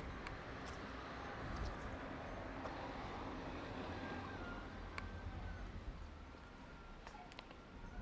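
Faint outdoor street ambience: a low, steady hiss and rumble with a few soft, scattered clicks.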